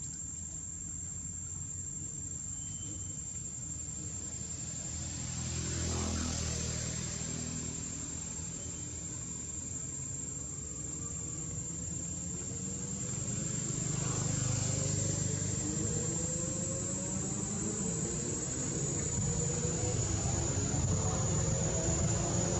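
Steady high-pitched insect drone, with a low rumble of passing traffic that swells about six seconds in and again in the second half.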